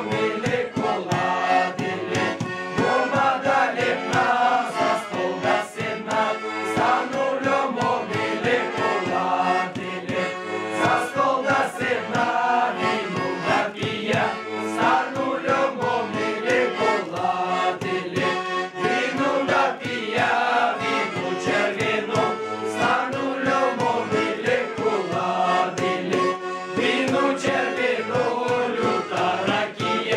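A group of young men singing a folk carol together, accompanied by a small button accordion.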